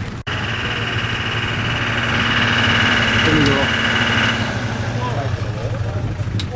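A vehicle engine idling steadily, with a steady high whine over it for about the first four seconds that then stops.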